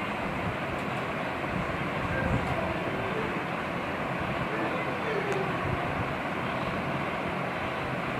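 Steady background noise with faint, distant voices.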